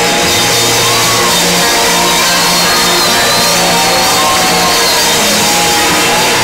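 A live rock band playing loud and without a break: drum kit, electric guitars, bass and keyboard, with a pitched line that bends up and down above the band.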